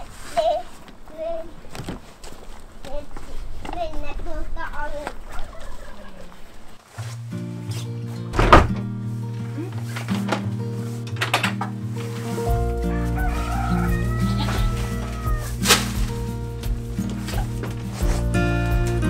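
Chickens clucking in a henhouse, then background music with sustained chords from about seven seconds in, with a couple of sharp knocks over it.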